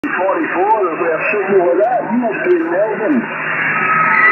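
A distant station's voice coming in over a radio receiver's speaker, thin and narrow under a steady hiss of static. A steady whistle comes in near the end.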